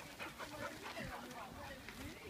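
Faint short calls from dogs, with distant voices in the background.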